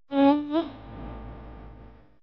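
A short buzzing, pitched tone lasting about half a second, with a slight wobble in pitch, trailing off into a fading low hum.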